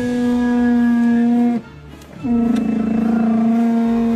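Car window creaking as it moves, in two long, steady, Chewbacca-like groans with a short break about a second and a half in.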